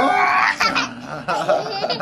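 Laughter, in short repeated spurts.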